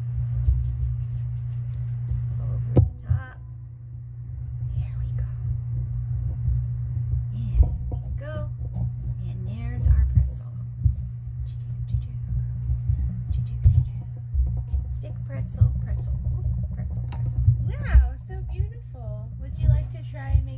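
A steady low hum with faint, indistinct whispered voices now and then, and a few light knocks.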